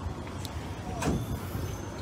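Low, steady rumble of street traffic, with a brief faint sound about a second in.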